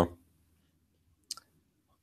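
A single short, sharp click about a second and a half in, otherwise near silence.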